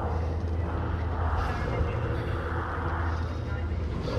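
Film sound design: a steady low rumble with a whooshing noise that swells and fades twice.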